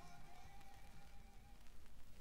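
The last held note of a rock song fading out on a vinyl record. It dies away about one and a half seconds in, leaving faint record surface noise with a few soft clicks.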